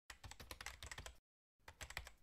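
Faint typing sound effect: rapid keystroke clicks, about ten a second, in two runs with a brief pause about a second in.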